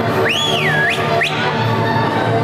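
Folk dance music playing, with a loud whistle over it: one tone that rises and falls, followed by two quick upward whoops about a second in.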